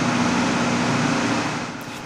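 Steady machine hum over a broad, even rushing noise, easing off slightly near the end.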